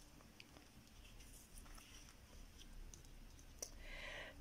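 Near silence with a few faint clicks and light handling noises: a plastic pen being picked up and a paper flashcard being set down on a tabletop, with one slightly sharper click near the end.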